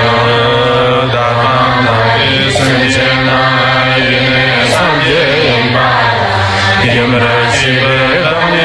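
Tibetan Buddhist refuge and bodhicitta prayer chanted in Tibetan to musical accompaniment, the voice held in long, slowly changing notes over a steady low drone.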